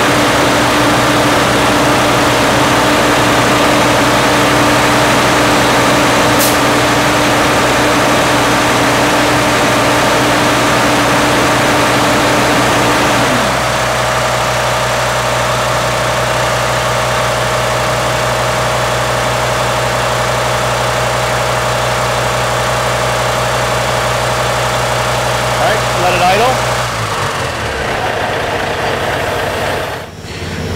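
Diesel engine of a Class 8 truck idling steadily while its alternator's charging output is tested. A higher steady tone over the engine drops away about halfway through, and the engine winds down and stops a few seconds before the end.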